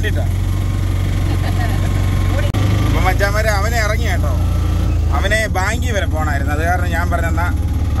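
Auto-rickshaw engine running steadily while the three-wheeler drives, heard from inside its open cabin as a low hum whose pitch shifts about two and a half seconds in and again after five seconds.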